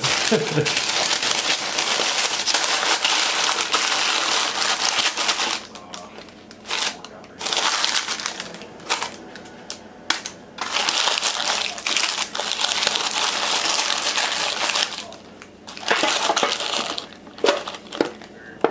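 Stiff paper liner crinkling and rustling in spells of a few seconds, with short pauses, as handfuls of maple candy are packed into a paper-lined basket. A short laugh comes just after the start.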